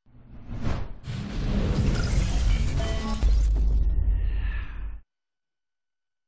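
Cinematic logo-sting sound effect: a rising whoosh, then a crashing hit with a deep rumble and a few ringing tones, which cuts off suddenly about five seconds in.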